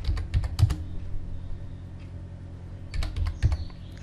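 Computer keyboard keys clicking as a command is typed: a quick run of keystrokes, a pause of about two seconds, then another short run, over a faint steady low hum.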